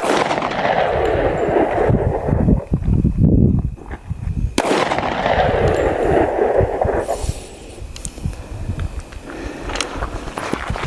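9mm handgun shots: two loud reports, one at the start and one about four and a half seconds in, each followed by a long rolling echo. A few shorter sharp cracks come near the end, with wind rumbling on the microphone.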